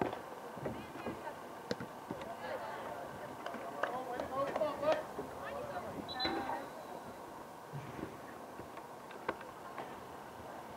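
Distant, indistinct voices of players and spectators calling out during a soccer match, strongest in the middle of the stretch, with a few sharp knocks scattered through it.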